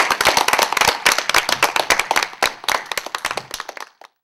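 Applause from a small group of people clapping, dense at first, thinning out over the last second and then cutting off abruptly.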